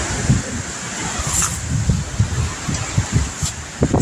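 Strong wind blowing through trees, a steady rushing hiss, with gusts buffeting the phone's microphone in irregular low rumbling thumps.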